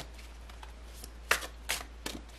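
A tarot deck being shuffled by hand, the cards sliding and snapping against each other in two short, crisp strokes in the second half.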